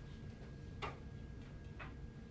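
Two faint, sharp clicks about a second apart, over quiet room tone with a thin steady high-pitched tone.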